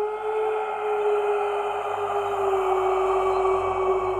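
Sustained ambient music drone: one held tone with a stack of overtones above it, steady and sinking slightly in pitch.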